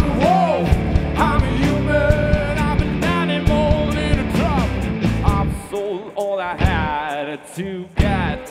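Acoustic rock band playing live: a male singer's voice over strummed acoustic guitar and a full low accompaniment. About two-thirds of the way through, the low end drops away, leaving the voice and lighter accompaniment.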